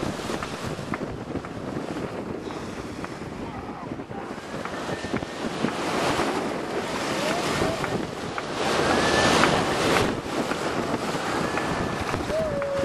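Wind buffeting the microphone over water rushing and splashing past the bow of a moving boat, swelling louder about nine seconds in, with a few faint short whistle-like tones.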